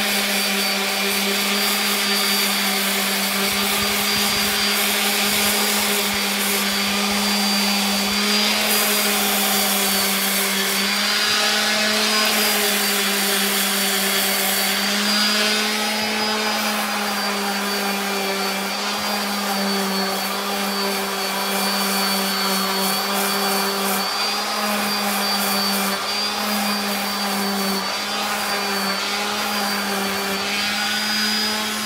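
Electric random orbital sander running steadily against a carved wooden ball, a motor hum with a high whine over the rasp of the sanding pad. The pitch shifts slightly now and then.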